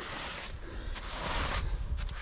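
Snow being brushed off a signboard by hand: a rustling scrape that swells about a second in.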